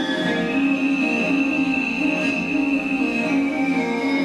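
Mongolian traditional ensemble music: bowed horse-head fiddles (morin khuur) playing over a steady low drone, with a held high tone above.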